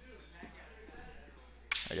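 Faint background with a low steady hum and a few soft, barely audible ticks, then a man's voice begins near the end.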